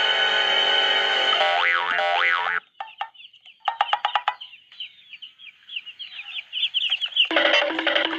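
Music with a sliding, warbling line plays for the first two and a half seconds and stops. Then baby chicks peep in a quick run of short, high, falling chirps, with a few sharp clicks about four seconds in, until music comes back near the end.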